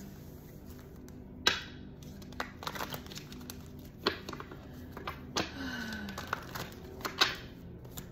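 A deck of tarot cards being shuffled by hand: scattered sharp snaps and rustles of the cards, the loudest about a second and a half in and again near the end.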